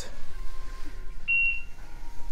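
A single short electronic beep a little over a second in, from a phone shopping app confirming a barcode scan, over faint steady store background noise.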